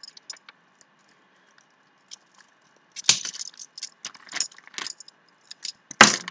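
Metal dog tags and bead (ball) chains clinking and rattling as they are picked up and handled: a few faint ticks at first, then a busier run of jingling clicks from about halfway through.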